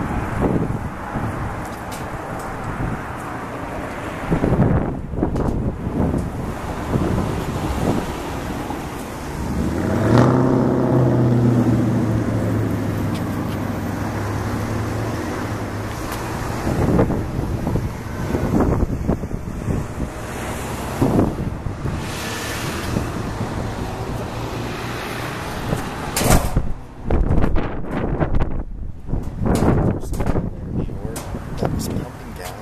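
Road traffic going by, one vehicle's engine loudest about ten seconds in and fading away over several seconds, with wind gusting on the microphone.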